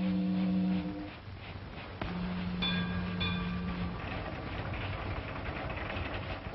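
A ship's steam whistle sounding long, low blasts: one that stops about a second in and a second one of about two seconds, over a steady hiss.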